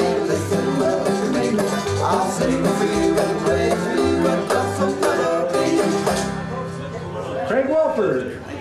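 Old-time string band playing an upbeat instrumental, with banjo leading over plucked strings and a steady moving bass line. The playing thins briefly near the end.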